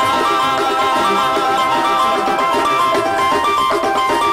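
Duranguense band playing live in an instrumental passage with no singing: a melody of held notes stepping up and down over a steady beat.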